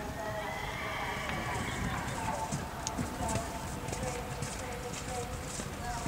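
A horse cantering on grass turf, its hoofbeats faint and soft, with voices in the background.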